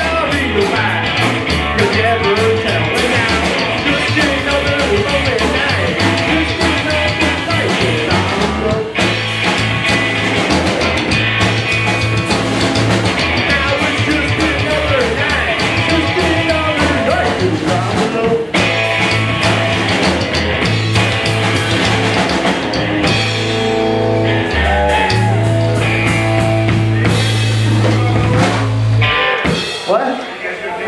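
Live rockabilly band playing a song: electric guitar, upright double bass and drum kit, with a male lead vocal. Near the end the band holds a long final chord, which stops just before the talking resumes.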